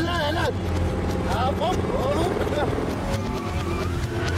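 Movie action soundtrack: a man shouts in two bursts, in the first half-second and again around the middle, over music and the low steady rumble of a tanker truck's engine.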